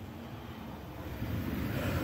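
Road traffic: a vehicle passing, its low rumble and tyre hiss growing louder from about a second in.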